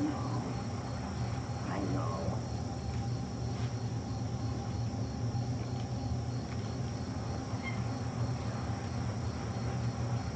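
Steady low hum and hiss of room background noise, with a faint, evenly pulsing high tone over it.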